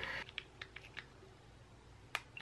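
A few faint, short clicks and taps in the first second, as of small objects being handled, then faint room tone.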